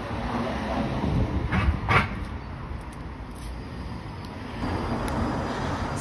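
Outdoor street noise: a steady low rumble with a light hiss, and two short sharp sounds about two seconds in.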